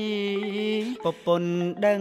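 A man chanting a Khmer poem in slow, melodic recitation style, holding long level notes. About a second in there is a brief break, then a lower note, and the voice rises again near the end.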